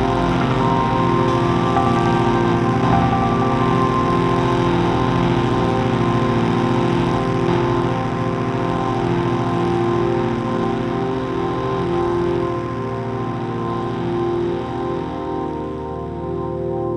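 Electronic music: layered, sustained organ-like synthesizer tones with a slowly pulsing pattern underneath, easing slightly in level toward the end.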